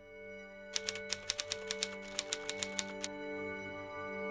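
Typewriter keystroke sound effect: a quick, uneven run of about a dozen clicks, ending about three seconds in, over steady held tones of ambient background music.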